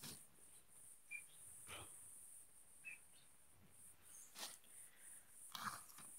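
Near silence: a few faint, brief rustles, as of orchid bundles being handled, with two tiny high chirps about one and three seconds in.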